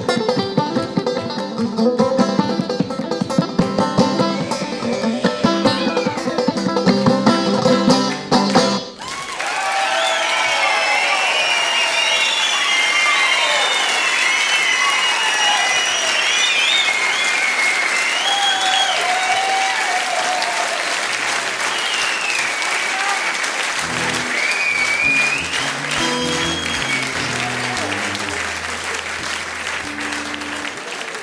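Live banjo picking with band accompaniment ends abruptly about nine seconds in, and the audience breaks into sustained applause with whistling; a few low plucked notes sound under the clapping near the end.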